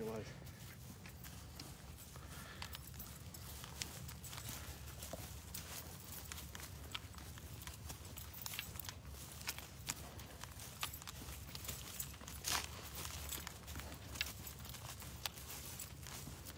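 Footsteps crunching through dry corn stubble, a run of irregular crackles and snaps with a louder crunch about three-quarters of the way through, over a steady low rumble.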